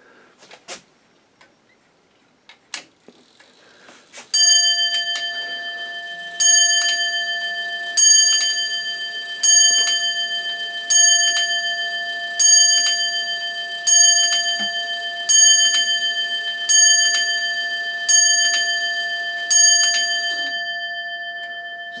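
Longcase clock movement striking eleven o'clock on its bell: after a few clicks, the hammer strikes eleven even blows about a second and a half apart, each ringing on into the next.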